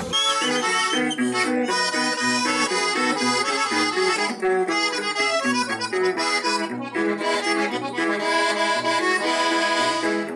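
Norteño fara fara music: an accordion carries the melody over a plucked string backing with a stepping bass line, an instrumental passage without singing.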